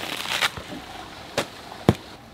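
Crisp rustling and snapping of romaine lettuce leaves being pulled and handled, with two sharp knocks in the second half, the last and loudest near the end.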